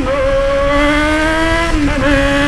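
Yamaha XJ6's inline-four engine, very loud through an open exhaust with the muffler baffle removed, rising steadily in pitch as the bike accelerates. Near the end the note drops sharply and then holds, as at an upshift.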